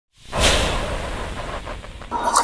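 A whoosh sound effect that swells quickly a fraction of a second in, then fades away over about a second and a half.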